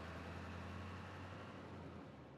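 Faint, steady low engine rumble of cartoon vehicles driving away, fading out near the end.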